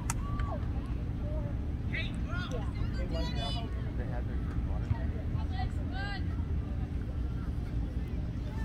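Wind rumbling steadily on a phone microphone beside a soccer field, with distant voices of players and spectators calling out now and then, the clearest shouts about three seconds in and again around six seconds.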